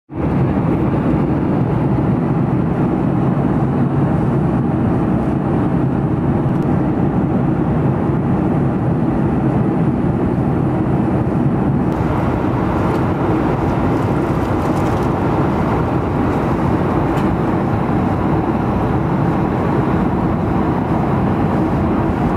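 Steady cabin noise of a jet airliner in cruise flight, the deep, even rush of engines and airflow heard from a passenger seat. It changes slightly in tone about halfway through.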